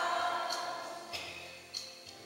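A choir singing, its sustained chord fading away over the first second, then a few short faint high ticks.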